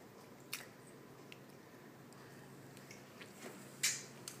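Quiet room with a small click and a few faint ticks, then a short wet smack near the end as a toddler licks sauce off her fingers.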